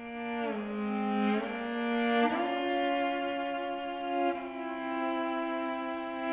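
Unaccompanied cello playing long bowed notes that slide smoothly from one pitch to the next: a slide down about half a second in, slides up around one and a half and two and a half seconds in, then a long held note.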